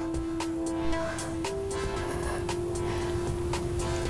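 Background workout music with a steady beat under one long held note that steps up slightly about a second and a half in.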